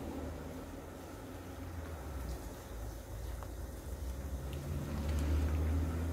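Silicone spatula stirring mayonnaise and herbs in a glass bowl, with a low steady hum underneath that grows louder in the second half.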